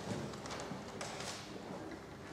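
Classroom background noise while students work: a few scattered light knocks and taps over a faint murmur.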